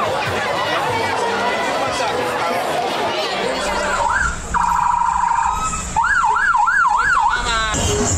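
Crowd chatter for the first half, then a police car siren cycling through its tones: a short rising whoop, a pulsing steady tone, a wail rising and falling about three times a second, and a brief fast warble that cuts off just before the end.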